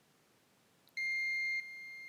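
Multimeter continuity buzzer beeping as the probes touch a desoldered diode: a steady high beep starts about halfway in, then drops to a softer tone that keeps sounding. The beep shows a short across the diode, which reads close to zero.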